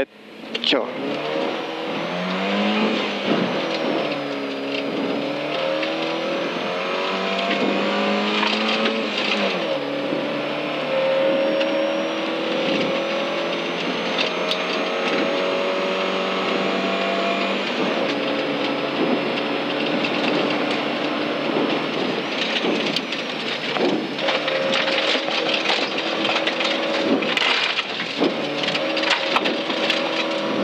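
Volvo 940 rally car's engine heard from inside the cabin, setting off from the stage start and accelerating hard, its pitch climbing and dropping back at gear changes over the first ten seconds, then holding a steady pitch at speed. Sharp clicks of gravel hitting the car come throughout.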